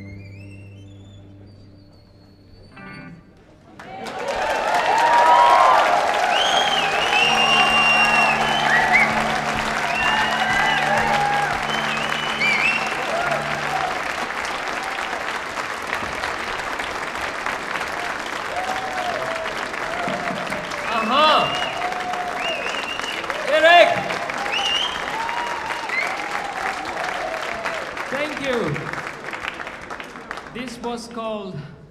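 The band's last notes fade out, then about four seconds in a concert audience breaks into loud applause and cheering that goes on steadily.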